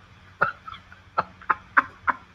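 A man's stifled laughter: a series of short breathy bursts, about four of them, each cut off sharply.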